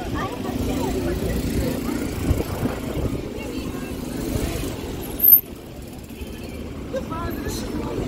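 Busy city street ambience: many people's voices talking at once over the low rumble of passing traffic, with one brief loud thump about five seconds in.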